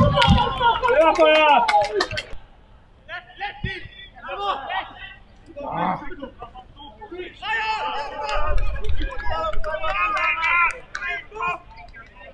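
Men's voices shouting and calling out across a football pitch. The shouting is loudest and most sustained in the first two seconds, then breaks into shorter calls with pauses between them.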